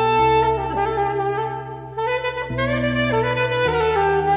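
Alto saxophone playing an Afrobeats melody in a run of held notes over a backing track of sustained low chords that change about three times.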